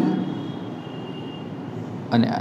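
Steady background hum and hiss, with a faint thin squeak from a marker being drawn across a whiteboard for about a second and a half.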